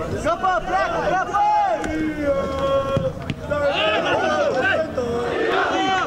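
Spectators and players shouting as an attack nears the goal, many voices overlapping, with one long held shout about two seconds in.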